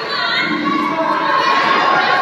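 Crowd of spectators shouting and cheering, many voices at once, with high children's voices among them.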